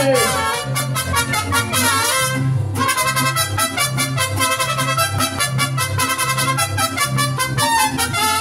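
Live mariachi band playing an instrumental passage between sung verses: trumpets carry the melody over a steady bass beat and strummed guitars, with a brief break in the strumming about two and a half seconds in.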